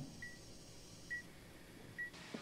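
Hospital patient monitor beeping faintly, short high electronic tones about once a second.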